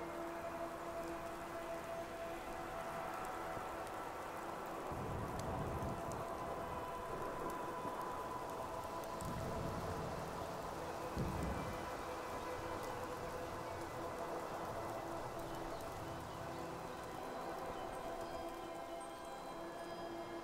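Soft ambient music with long held notes over a steady hiss of night wind. A few deep rumbles rise under it near the middle, the sharpest about eleven seconds in.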